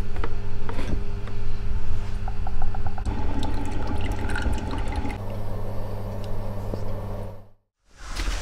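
Home espresso machine running with a steady hum, and from about three seconds in coffee streams into a glass cup. The sound cuts off just before the end.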